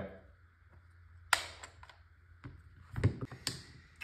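Sharp clicks and a light knock from a Tippmann TiPX paintball pistol and its small parts being handled and taken apart: one click about a second in, then a cluster of clicks and a knock in the second half.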